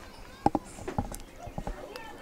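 A few short, sharp knocks: one about half a second in and a small cluster in the second half, heard over faint distant voices and field ambience.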